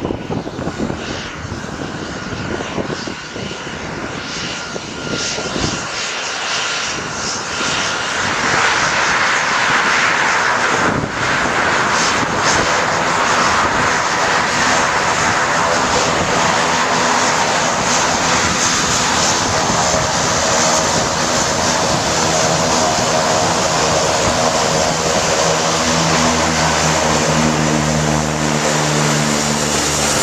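Crop-duster airplane's engine and propeller running as it taxis toward the listener, growing louder over the first eight seconds and then holding steady. Near the end, as it swings broadside close by, a steady low engine drone with several held tones comes to the fore.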